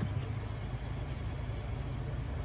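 A 2024 GMC Canyon AT4's 2.7-litre turbocharged four-cylinder engine idling, a steady low rumble heard from inside the cabin.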